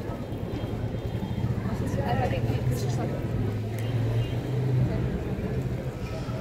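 Motorcycle engine running at low revs close by, a steady low hum that swells from about a second and a half in and is loudest a little before the end, over the chatter of a street crowd.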